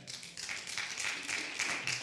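Church congregation applauding: steady clapping of many hands.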